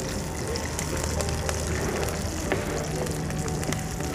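Steady sizzling hiss of ingredients cooking in a pan, with a few light clicks.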